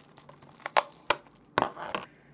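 Thin clear plastic wrapping crinkling and crackling as it is pulled away from a potted plant: a few sharp crackles, then a longer rustle near the end.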